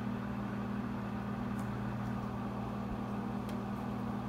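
Overhead projector's cooling fan running with a steady hum, with two faint ticks partway through.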